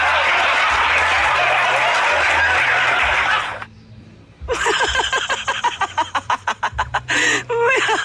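A flock of chickens clucking and chattering, which cuts off abruptly about three and a half seconds in. After a second's gap comes a rapid, evenly spaced run of short repeated sounds, about five a second.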